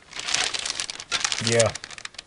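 Clear plastic parts bag crinkling as it is handled and pressed flat on a bench: a dense, irregular run of crackles.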